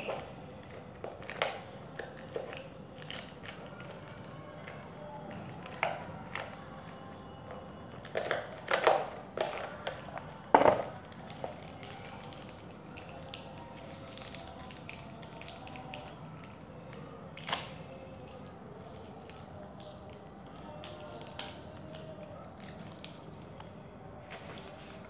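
Irregular scratchy rubbing and light taps of an eraser on paper on a tabletop, with a few louder knocks around the middle and one more later on. Faint background music runs underneath.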